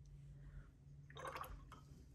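Faint, short wet swishes of a watercolour brush loaded with water and paint working over wet paper, about a second in, over a low steady hum.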